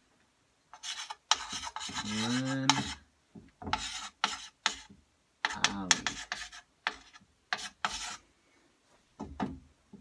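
Chalk writing on a small chalkboard: a run of short scratchy strokes that starts about a second in and stops near the end.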